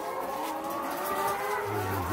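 A flock of caged laying hens calling together, a steady chorus of many overlapping drawn-out notes.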